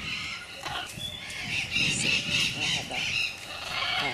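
Parrots calling: a run of harsh, repeated calls, a few a second, loudest around the middle.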